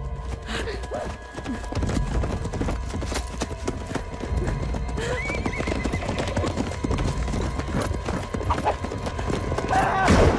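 Horse hoofbeats thudding over dark orchestral music, with a horse whinnying about five seconds in. A man's loud shout comes right at the end.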